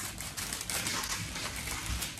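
Baking paper crackling and rustling as it is cut with scissors, a dense run of fine, rapid crisp clicks.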